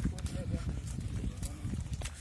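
Faint, indistinct speech over a steady low rumble.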